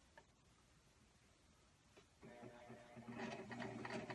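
Electric sewing machine starting about two seconds in and running steadily, a fast even run of stitches over a low hum, as it sews along the edge of a fleece hammock to close the turning hole. The first two seconds are near silence with a faint click.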